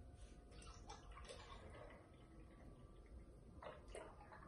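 Faint sound of half-and-half being poured into a jar, with a light knock near the end.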